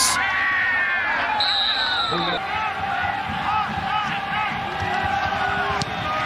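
Stadium crowd noise with a referee's whistle blown once, a single shrill steady note about a second long, starting about one and a half seconds in.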